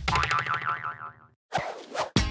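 Cartoon-style spring "boing" sound effect: a wobbling tone that sinks in pitch and fades out after about a second and a half, followed near the end by a brief noisy rush.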